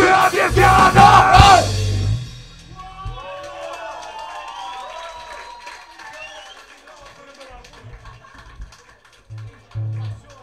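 Hardcore punk band playing live at full volume with shouted vocals, stopping abruptly about two seconds in. The crowd then shouts and cheers, fading to scattered voices, with a short low hum near the end.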